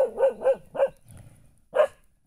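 A puppy barking: a quick run of about four high, short barks in the first second, a brief pause, then one more bark near the end.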